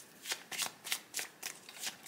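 A tarot deck being shuffled by hand: a quick, irregular run of soft papery card flicks.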